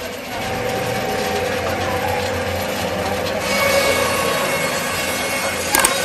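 Meat and bone bandsaw running steadily, its blade cutting through beef pushed into it by hand. A sharp click near the end.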